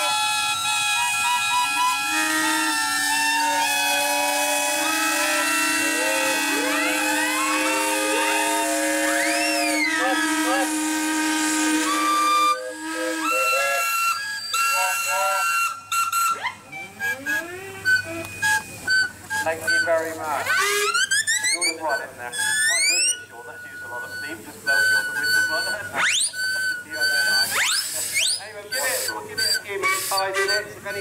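Many steam traction engines sounding their steam whistles together, a chorus of overlapping pitches held steadily for about thirteen seconds. The chorus then breaks up into shorter separate toots and whistles that swoop up in pitch.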